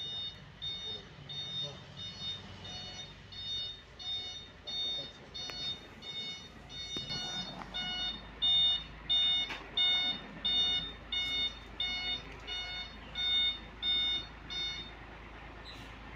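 Cargo truck's reversing alarm beeping in a steady rhythm, a little under two beeps a second, stopping about a second before the end. From about halfway through, the truck's engine can be heard running low underneath.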